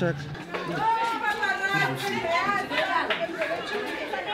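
Voices chattering in the background, not clear as words.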